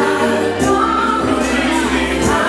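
Music playing: singing voices over instruments, with a drum beat striking at intervals.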